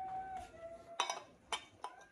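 Sharp metallic clinks of a steel AR armorer's wrench being handled against an AR pistol upper: three short clinks, about a second in, half a second later and near the end.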